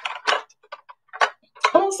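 Light clicks and taps of small makeup items being picked up and moved on a table: a handful of separate ticks over about a second, then a woman starts speaking near the end.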